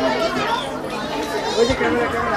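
Several people talking at once: background chatter of a crowd.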